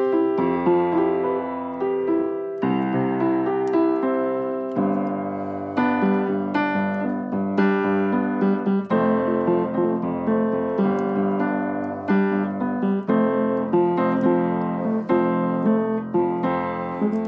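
Solo piano playing chords and sustained notes, with no singing.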